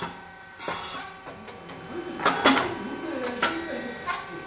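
SYP9002 rice cake puffing machine working its twin molds: mechanical noise with short noisy bursts, the loudest about two and a half seconds in, with voices in the background.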